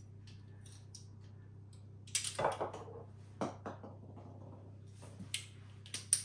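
A few short clicks and scrapes of a metal garlic press being handled and squeezed, over a steady low hum.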